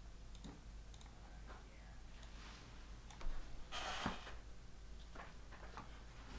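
Quiet room tone with a few faint scattered clicks and a short rustle about three to four seconds in.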